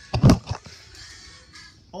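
A short loud cluster of thumps and rustling as the camera is grabbed and moved, then a faint hiss.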